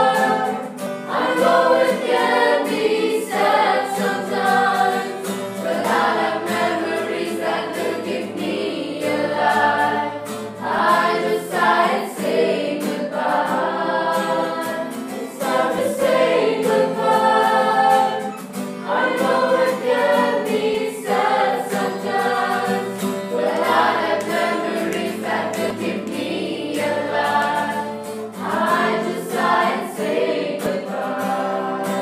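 A group of singers singing a farewell song together in chorus, over a musical accompaniment.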